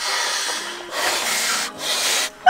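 A person blowing hard by mouth into the valve of an inflatable sleeping pad, two long breaths of rushing air with a short break just before one second in.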